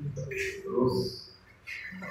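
Brief, indistinct snatches of men's voices in a tiled room, with a short high chirp-like sound about a second in, then a lull.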